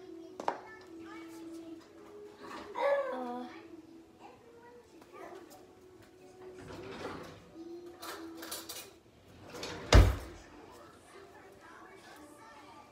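Household knocks and clicks with a faint voice in the room, then one sharp knock about ten seconds in, like a cupboard door or drawer shutting.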